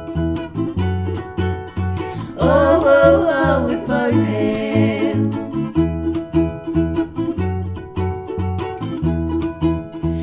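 Acoustic guitar and ukulele picked together in an instrumental break, with a steady, repeating bass line. A short wordless vocal run comes in about two and a half seconds in and fades by the fourth second.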